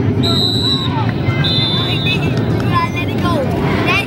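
Two short, steady referee's whistle blasts, about a second apart, over the continuous chatter of a stadium crowd.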